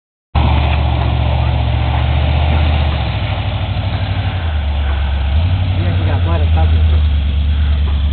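A 4x4 truck's engine running as it drives through mud: a deep steady drone that shifts in pitch about three seconds in and again about five and a half seconds in. Voices are heard briefly near the end.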